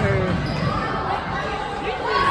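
A volleyball struck once at the start during a rally, the hit echoing in a gym, followed by players' voices.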